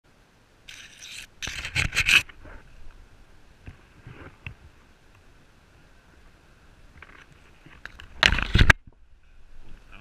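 Branches and leaves scraping and rustling over a body-worn camera's microphone as it pushes through dense undergrowth, in a few short bursts: the loudest about two seconds in and another near eight seconds.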